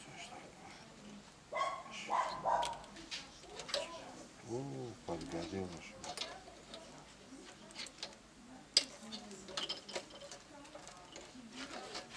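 Metal shashlik skewers clicking and clinking against each other and the mangal as they are turned by hand over a wood fire. The clicks are scattered and irregular, and one sharp click about nine seconds in is the loudest.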